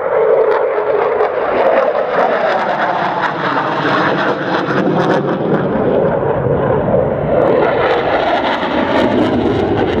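Saab JAS 39C Gripen fighter's single Volvo RM12 turbofan running in a loud, continuous jet roar with a crackling edge as it flies overhead. A tone within the roar drops in pitch over the first few seconds as the jet passes.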